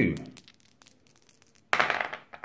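A pair of dice thrown onto a wargaming table, a brief clatter near the end. It is the roll for a unit's break test.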